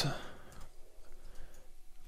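A few faint, scattered clicks of computer keyboard keys being typed.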